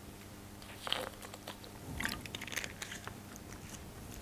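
Faint handling noise: scattered small clicks and crinkling, with a brief rustle about a second in and a cluster of clicks about two to three seconds in, over quiet room tone.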